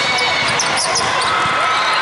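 Busy sound of volleyball play in a large, echoing hall: sneakers squeaking on the court, the ball being struck and voices of players and spectators. A cluster of sharp hits and squeaks comes in the first second.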